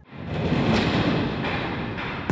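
Potato-handling machinery running: a crate tipper tilting a wooden crate over a hopper, heard as a steady, rough noise with no clear pitch that fades in over the first half second.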